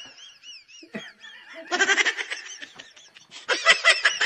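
Several people laughing in two bursts, one about two seconds in and another near the end, after a quick run of short, high, squeaky notes at the start.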